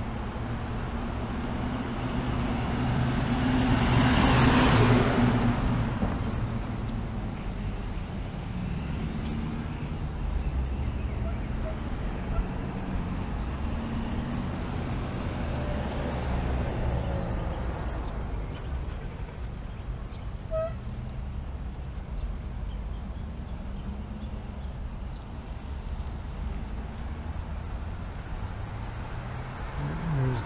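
Road traffic: a vehicle passes loudly about four seconds in, and another more faintly around sixteen seconds, over a steady low rumble.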